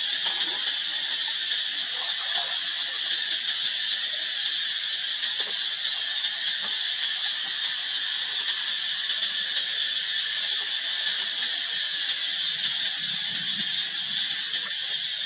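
A steady, high-pitched, hissing drone that holds evenly throughout, like a chorus of insects such as cicadas.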